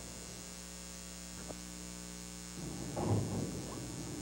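Steady electrical mains hum with its overtones on an old videotape soundtrack. About two and a half seconds in, a faint rougher room noise joins it, with a brief louder patch just after.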